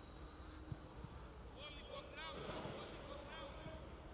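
Faint outdoor ambience of a football training session: distant players' voices calling out a few times, with a short dull thud a little under a second in.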